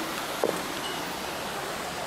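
Steady rushing of creek water, heard as an even hiss, with a brief faint knock about half a second in.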